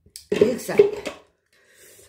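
A woman's voice, a brief murmur lasting under a second, with a faint clink of dishes just before it.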